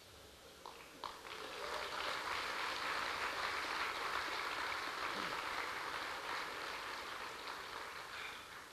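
Audience applause in a large hall, starting about a second in and slowly tapering off toward the end.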